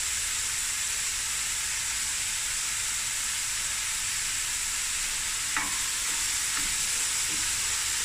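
Chopped onions frying in hot oil in a stainless steel pot: a steady, even sizzle, with one brief tick a little past halfway through.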